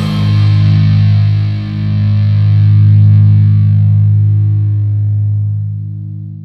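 The closing chord of a heavy-metal cover, played on a distorted electric guitar, held and left to ring out. It fades away near the end.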